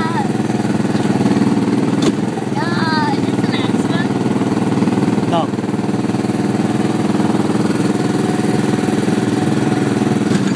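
A go-kart's small engine running steadily at a constant speed, with a fast, even pulsing. A brief voice cuts in about three seconds in and again about five seconds in.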